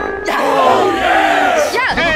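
Young men's loud, drawn-out yells and groans of straining effort, more than one voice overlapping and arching up and down in pitch, ending in a quick rising-then-falling squeal.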